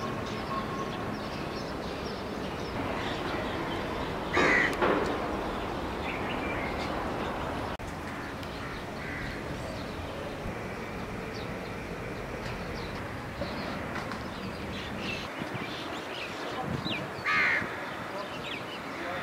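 A crow cawing: a pair of caws about four and a half seconds in and another near the end, over steady background noise.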